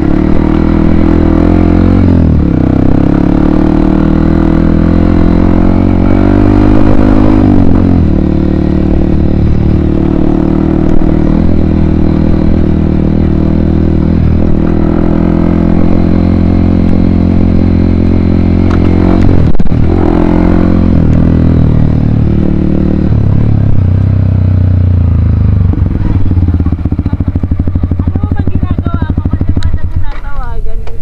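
Yamaha WR155R dual-sport motorcycle's single-cylinder engine running while riding over a gravel and grass track, its pitch rising and falling with the throttle, with brief dips about two seconds in and again around twenty seconds. In the last several seconds it settles to a lower, steadier note as the bike slows.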